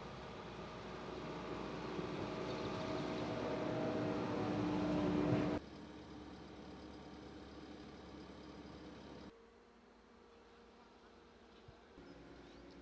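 Road-rail excavator's engine running, a steady hum that grows louder for about five seconds and then cuts off abruptly. After that only faint, quiet background ambience remains.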